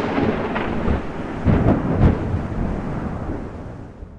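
Heavy rumbling noise of a horror-trailer sound effect, like rolling thunder. It swells again a few times in the first half and slowly fades out near the end.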